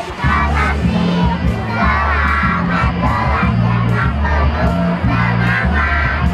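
A group of young children singing loudly together over a backing music track, whose low bass line of held notes comes in just after the start.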